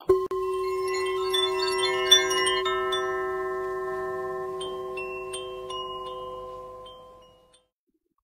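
A set of chimes struck together, with a few more light tinkles in the first couple of seconds and a few high strikes around five seconds in. The many tones ring on and fade away over about seven seconds.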